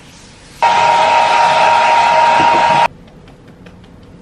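Hair dryer blowing with a steady whine. It cuts in abruptly about half a second in and stops abruptly after about two seconds.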